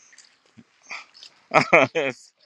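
A dog barking: three short, loud barks in quick succession near the end.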